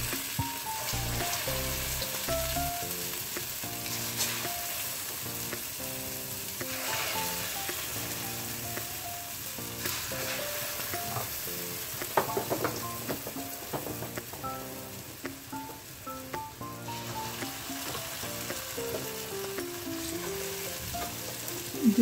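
Urad dal batter dumplings deep-frying in hot oil: a steady sizzle and bubbling that briefly flares up a few times as more batter goes in. Soft background music with a simple melody plays throughout.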